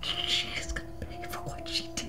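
A woman laughing softly in breathy, whispery bursts, over a steady low held tone of the film's score.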